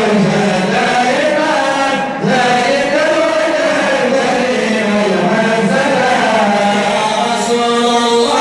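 Unaccompanied male voice chanting a Sufi madih (praise poem for the Prophet) into a microphone, in long, melismatic held notes, with a short breath break about two seconds in.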